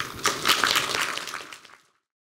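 Audience applauding, a dense patter of clapping that fades out near the end.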